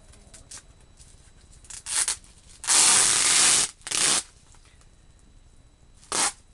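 Plastic packaging rustled and pulled open: a couple of short rustles, then one louder rustle or tear lasting about a second near the middle, and another short one just after.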